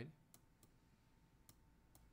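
Near silence with four faint, short clicks spread unevenly across two seconds: a stylus tapping on a writing tablet as a number is handwritten.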